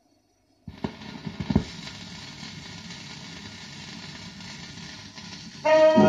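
A Shure cartridge's stylus dropping onto a 1927 shellac 78 rpm record: a few thumps as it lands, then steady surface hiss and crackle from the lead-in groove. A dance band with brass starts near the end.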